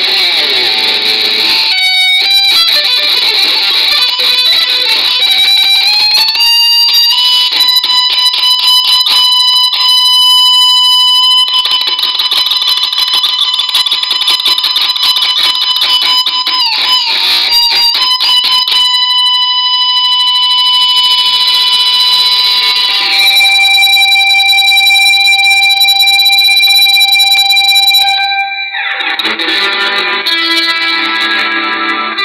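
Electric guitar lead playing long held notes, sliding and bending between pitches, over a metal backing with little low end; the line dips briefly near the end.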